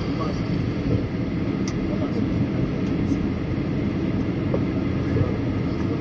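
Steady cabin noise of a Boeing 737-800 taxiing, its CFM56 engines at idle, a low even rumble with a faint steady hum, heard from inside the cabin.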